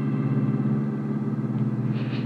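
Car engine sound effect running steadily as a low, even rumble, with the last of an organ chord fading out over it.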